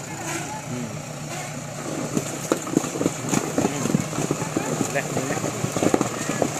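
JCB 4DX backhoe loader's diesel engine running as its tyres roll over a pile of full beer cans, crushing and bursting them. From about two seconds in comes a rapid, irregular series of sharp pops and crackles as the cans give way.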